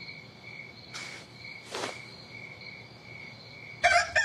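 Crickets chirping in a steady, pulsing trill, with two short soft rustles about one and two seconds in. A rooster starts crowing loudly right at the end.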